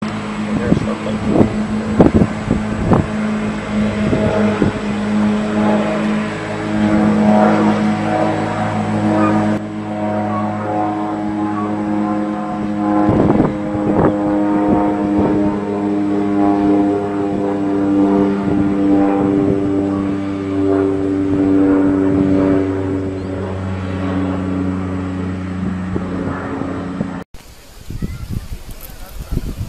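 A motor running steadily at idle nearby, a low hum with a few held pitches that shift slightly over time, and scattered clicks and knocks over it.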